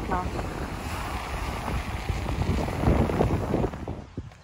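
Wind buffeting the microphone in gusts, over the wash of choppy surf breaking on a sandy beach.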